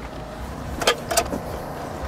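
Low steady rumble of a motor vehicle, with two short sharp clicks about a second in.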